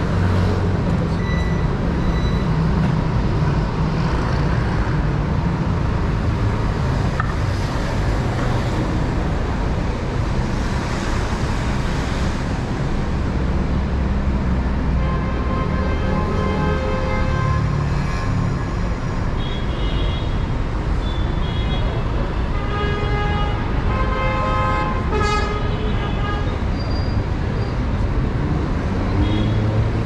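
Street traffic: car engines running and passing in a steady rumble. In the second half there is a string of short pitched tones, and one brief sharp sound near the end.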